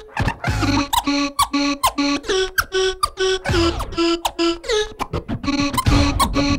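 Live turntable DJ music: a choppy rhythm of short pitched stabs, several a second, broken by sliding pitch sweeps from records being scratched.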